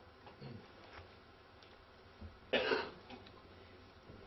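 A single short cough about two and a half seconds in, against faint room tone.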